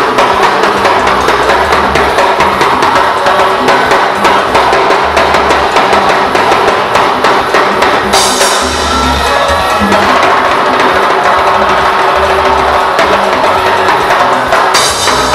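Live cumbia band playing an instrumental stretch driven by timbales, with congas and bass. A cymbal crash about eight seconds in rings for a couple of seconds over the beat.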